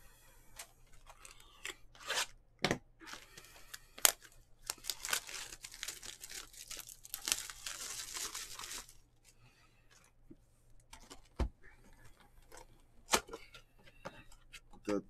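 Tearing and crinkling of the plastic wrap as a 2021 Topps Heritage Baseball hobby box is opened, a long noisy tear from about four to nine seconds in, with handling clicks and taps of the cardboard box before and after.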